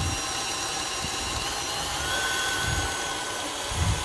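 Electric stand mixer running steadily, beating royal icing.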